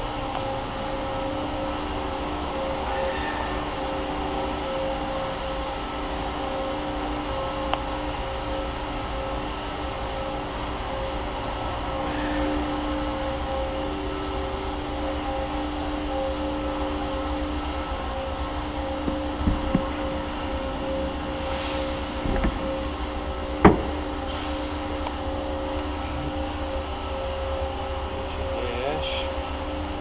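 Steady mechanical hum with a couple of faint held tones in it. A few short knocks come just past the middle, then one sharp click.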